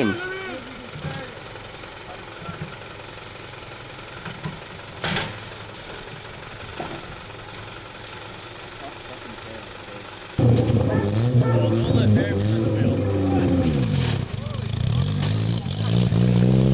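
A car engine running loud about ten seconds in, its pitch wavering as it is revved. Before that there is only faint background.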